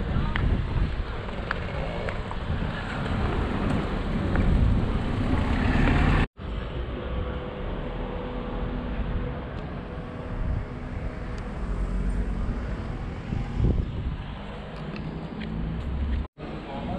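Outdoor street sound: road traffic going by, with wind buffeting the microphone, dropping out briefly about six seconds in.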